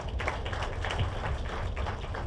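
Audience clapping: a steady patter of many light, irregular claps, quieter than the speech around it.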